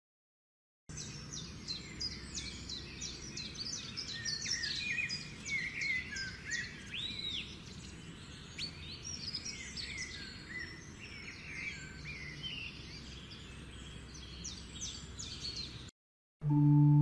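Several birds chirping and singing at once, a busy mix of short calls over faint background noise. It starts about a second in and cuts off suddenly just before the end.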